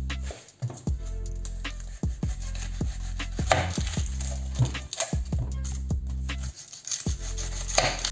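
A kitchen knife cutting and peeling an onion on a bamboo cutting board: irregular sharp taps of the blade on the wood, over background music.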